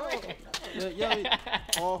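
Men talking and laughing, with one short click near the end.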